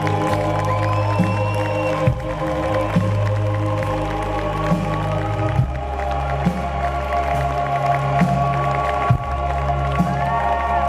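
Live band playing an instrumental passage: sustained keyboard chords over a deep bass line, with drum hits a little more than once a second. The bass moves to a new note about halfway through.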